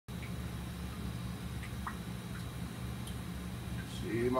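Steady low hum of an indoor aquaponics tank's pump, with a few faint drips of water.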